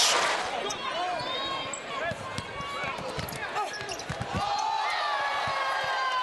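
A basketball bouncing repeatedly on a hardwood court, over arena crowd noise that is loudest at the start and fades during the first second.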